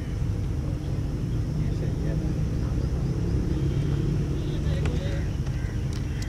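Outdoor ambience at cricket practice nets: a steady low rumble with faint distant voices, and a single sharp knock about five seconds in.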